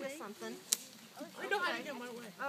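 Low voices talking, with one sharp snap about three quarters of a second in, the loudest sound.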